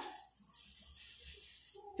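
Soft rustling of a thin plastic shower cap as it is pulled on and tucked in around the head, over a faint steady high hiss.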